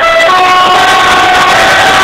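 Truck air horn sounding loudly, several notes held together as one steady chord.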